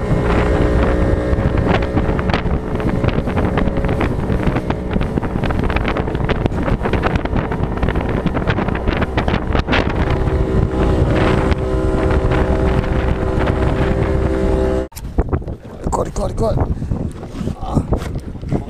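Motor of a small fishing boat running steadily at speed, with wind buffeting the microphone and water rushing past. About 15 seconds in it cuts off abruptly to quieter, uneven sound.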